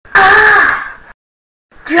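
A person's voice giving one drawn-out wail about a second long, dipping in pitch at the end.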